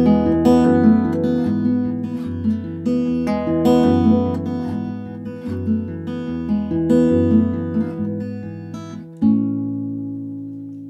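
Solo acoustic guitar playing the song's closing passage: a run of plucked notes over a changing bass, then a final chord about nine seconds in, left to ring and fade.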